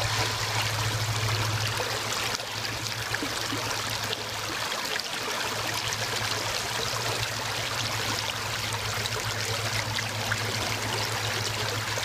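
Shallow creek water running steadily over stones and pebbles, an even rushing trickle, with a steady low hum underneath that drops out briefly near the middle.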